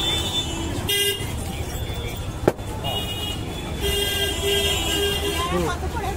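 Busy street traffic with a steady engine rumble, and a vehicle horn sounding a held, steady note briefly about a second in and again longer from about three to five seconds. There is a single sharp knock about halfway through, and voices around.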